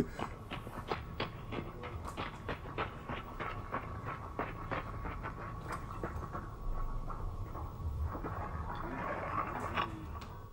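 Irregular light clicks and knocks, a few a second, over a low rumble and a faint steady hum.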